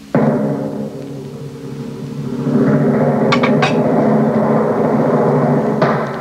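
Dramatic film-score music: a sudden loud hit with timpani, then a sustained low chord that swells louder about two and a half seconds in, with a few sharp percussive strikes a little past the middle.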